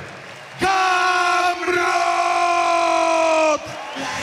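A ring announcer's long, drawn-out shout of the champion's surname over the crowd's cheering. It is held on one pitch for about three seconds, with a short break between its two syllables, and cuts off sharply near the end.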